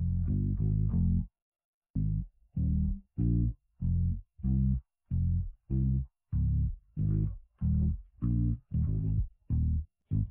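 Isolated bass stem split out of a song by Studio One 7's AI stem separation: a bass line of separate low notes, about three every two seconds, with silence between them and a short pause about a second in. It sounds fairly clean, with a synth-bass effect running through it.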